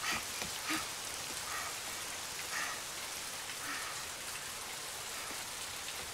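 Steady rain falling, a rain ambience from the anime's soundtrack.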